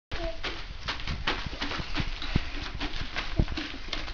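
A toddler's irregular knocking and tapping with a small toy mallet: several light taps a second, with a few heavier low thumps.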